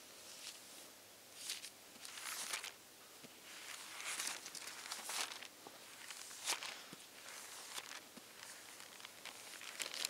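Bible pages being turned: a series of faint, irregular paper rustles and flicks, about one every second, as the book is leafed through to find a passage.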